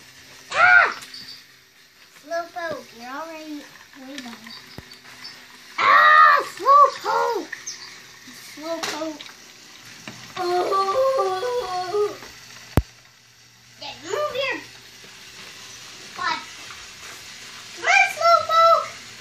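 Young child's wordless high-pitched squeals and sing-song calls at intervals; around ten seconds in, a short run of stepped, held notes like a sung tune, and one sharp click a little later.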